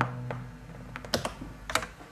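The last chord of a punk record playing on a turntable dies away, leaving a handful of scattered sharp clicks and pops, the loudest about a second and three-quarters in.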